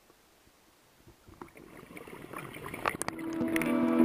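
Underwater gurgling and crackling clicks fading in from near silence about a second in and growing steadily louder, with steady sustained notes of music entering near the end.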